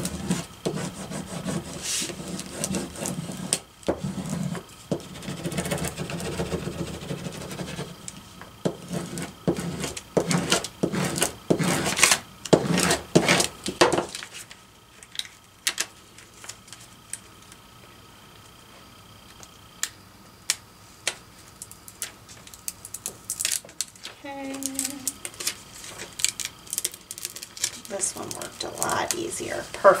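Plastic scraper tool rubbed firmly back and forth over transfer paper to burnish it onto a vinyl decal, in a run of scraping strokes over the first half. Then fainter paper handling and light taps follow.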